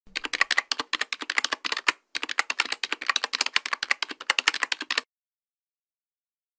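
Rapid computer-keyboard typing, about seven keystrokes a second, with a brief pause about two seconds in, stopping about five seconds in.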